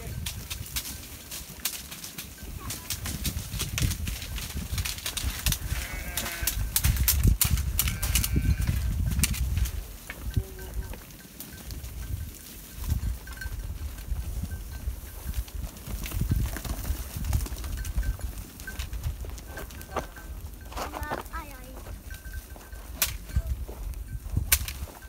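A flock of sheep and goats feeding on fallen carob pods: many sharp crunching clicks of chewing and hooves on stony ground over a low rumble, with a few short bleats about six to nine seconds in and again near the end.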